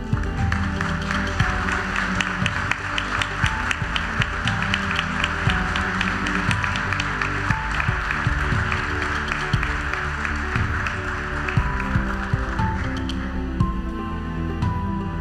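Audience applause over instrumental music. The clapping thins out near the end while the music goes on.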